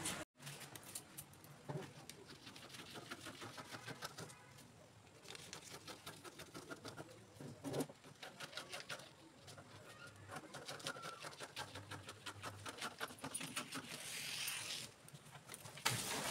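Scissors cutting through pattern paper: a long series of faint, crisp snips with paper rustling between them.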